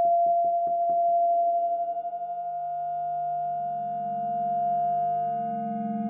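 Live electronic music of sustained sine-like tones: a steady held tone with quick pulsing, about five pulses a second, that stops about a second in, giving way to several layered held tones. A low wavering tone swells from about three seconds, and a thin, very high tone enters about four seconds in.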